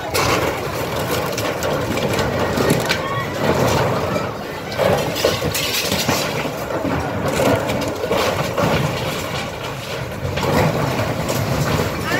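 Cat hydraulic excavator demolishing a wooden house: crunching and cracking of timber and zinc sheeting over the excavator's running diesel engine, with people's voices mixed in.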